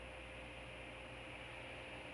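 Faint, steady hiss with a low hum and a thin steady tone: the microphone's background noise in a pause between words.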